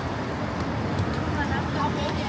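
Steady traffic noise of a wet city street, with snatches of people's voices in the second half.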